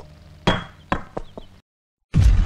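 A sharp knock about half a second in, with a brief ringing tone after it, followed by three lighter knocks, before the sound cuts out to silence.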